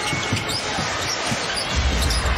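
A basketball being dribbled on a hardwood court with a few short sneaker squeaks, over steady arena crowd noise.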